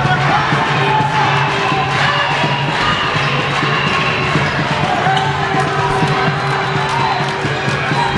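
Basketball being dribbled and bouncing on a hardwood court, heard from the stands as repeated short knocks. Crowd chatter and shouts run through it, with music playing over the hall.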